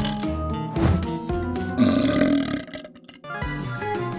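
Cartoon background music with held notes, then, about halfway through, a single loud baby burp sound effect. After it the music briefly drops out.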